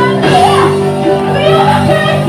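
Live worship music in a large hall: a band with bass guitar and keyboard plays steadily while several singers sing loudly into microphones, with voices calling out over the song.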